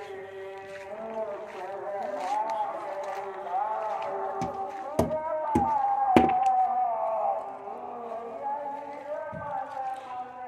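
A melodic singing voice holding and sliding between long notes, with four sharp knocks close together about halfway through.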